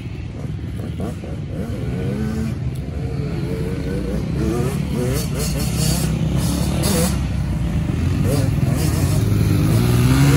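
Yamaha YZ85's 85 cc two-stroke single-cylinder engine revving up and down repeatedly as the dirt bike is ridden, getting steadily louder over the seconds.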